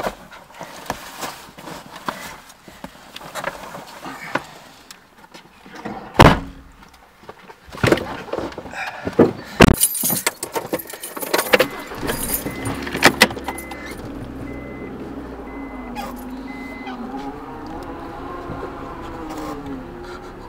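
Inside a car: rustling and knocking as snowboards and bags are pushed into the back seat, with two sharp bangs about 6 and 10 seconds in, like car doors shutting. About two-thirds of the way through, a steady low hum sets in as the car's engine runs, and a warning chime beeps several times.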